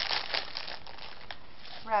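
Clear plastic wrapping crinkling and crackling as it is pulled open by hand, busiest in the first second and quieter after.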